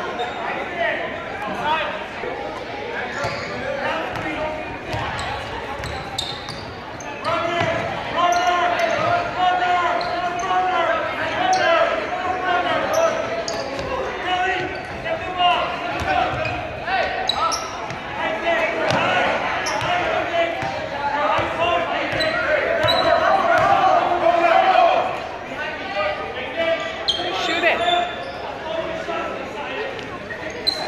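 Basketball bouncing on a hardwood gym floor during a game, with spectators' and players' voices throughout, all echoing in a large gymnasium.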